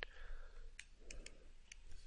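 Faint, irregular clicks of a stylus tip tapping on a tablet screen while handwriting, about half a dozen light ticks.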